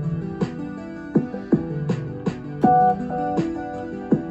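Synthesizers and a sample-based drum machine playing together, locked to one MIDI clock. Kick and hi-hat-like hits run under sustained synth chords played on a Korg MicroKorg and a sequenced Roland JU-06A part, with a brighter held note near the end.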